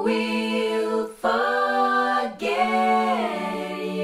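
A group of harmony backing vocals sung a cappella, heard as the dry original recording without the room plugin: three sustained sung chords, the last sliding down in pitch about three seconds in and then held.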